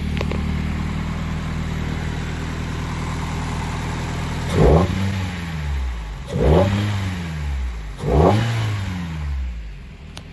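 Nissan 240SX's twin-cam four-cylinder engine idling steadily, then revved three times in quick blips, each rising sharply and falling back to idle. It is running again after a fault traced to the timing.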